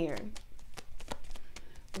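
Tarot cards being shuffled by hand: a run of quick, irregular card clicks.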